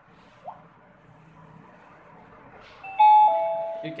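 CP Plus wireless video door phone ringing for an incoming call from the door unit: a two-note ding-dong chime, high then lower, starting about three seconds in and beginning again at the end. A short rising beep sounds about half a second in.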